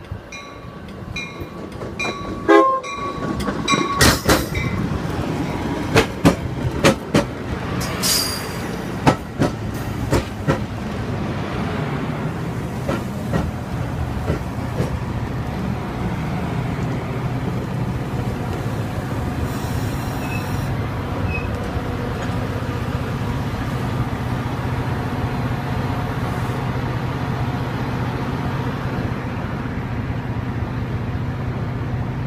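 Metra bilevel commuter train arriving and rolling past along the platform as it slows to stop. A bell rings in regular strokes for the first few seconds, with a short horn note about two and a half seconds in. Then comes a run of sharp wheel clacks over the rail joints with a brief high squeal about eight seconds in, and a steady rumble with a low engine hum as the cars pass.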